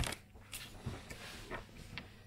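Gloved hands handling a cardboard packaging card on a tabletop: a few short, light clicks and rustles.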